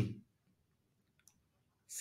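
A few faint, short clicks in near silence around the middle, from a stylus tapping on a pen tablet as a digit is written on screen.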